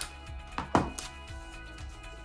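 Scissors snipping paper, a few sharp clicks with the loudest a little under a second in, over quiet background music.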